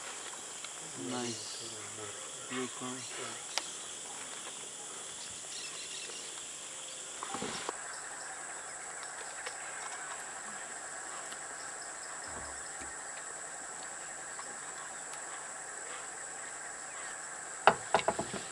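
Steady high-pitched drone of tropical forest insects, with faint voices talking quietly in the first few seconds. About seven seconds in, a lower steady buzzing joins the drone.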